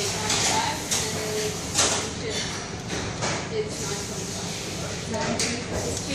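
Indistinct background voices and clatter in a fast-food restaurant dining area, with short knocks and rustles throughout.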